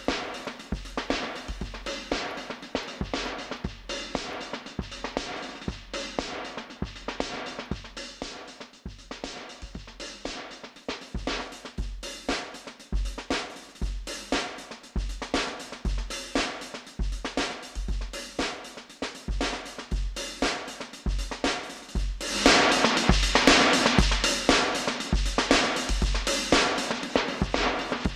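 Drum kit loop from the Addictive Drums 2 virtual instrument playing at 118 BPM, with steady kick and snare hits, through an EQ-based multiband compressor and upward expander. About 22 seconds in, the loop turns louder and brighter as the expansion pushes the quieter cymbal and upper-band material up, a drastic change.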